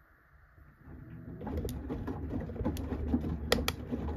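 Samsung front-loading washing machine's drum starting to turn again about a second in: a low motor hum with wet laundry sloshing and dropping in the drum, and a few sharp clicks, the loudest a quick pair past the middle.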